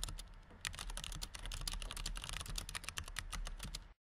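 Computer keyboard typing sound effect: a fast run of key clicks that stops abruptly near the end.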